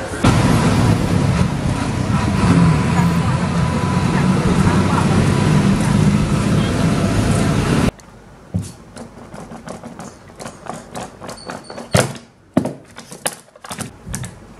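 A loud, steady din of voices and general noise in a busy indoor shopping mall. About eight seconds in it cuts to a quiet room, with scattered clicks and taps as an iPhone SE box and its plastic and cardboard accessories are handled on a desk. The sharpest tap comes about four seconds later.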